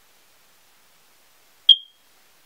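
A single short, high-pitched beep near the end, starting sharply and fading within a fraction of a second, over a faint steady hiss.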